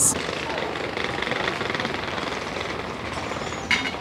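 Steady background noise of a busy airport: traffic and a general hum, with faint voices in it.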